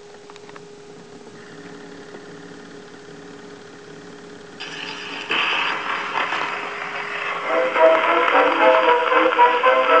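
Acoustic 1905 Victor Type II phonograph playing a 1911 Victor 78 rpm record. A few light clicks as the needle goes down are followed by groove hiss. About five seconds in, the record's instrumental introduction starts and grows louder, heard through the horn with surface noise.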